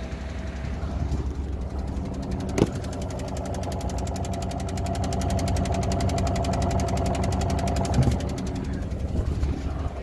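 Diesel engine of a converted bus running at idle with a heavy, rapid clac-clac-clac coming from under the vehicle. It is an unexplained fault noise that seems to be carried along the diesel fuel lines running from the engine to the tank.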